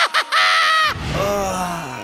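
A man's exaggerated cartoon-villain laugh for the Joker: a short burst, then a high, strained cackle, followed by a lower sound that slides down in pitch for about a second.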